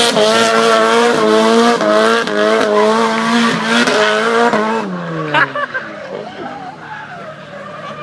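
Mazda RX-7 drift car's engine held at high, fairly steady revs while its rear tyres spin and screech in a smoky donut. At about five seconds the revs drop away and the sound fades to a lower, quieter running.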